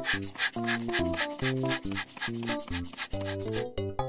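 Squeeze bulb of a blood-pressure cuff being pumped, a quick run of scratchy, rubbing strokes, over background music.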